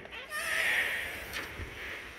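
A door creaking open: a wavering squeal lasting about a second, followed by a sharp click.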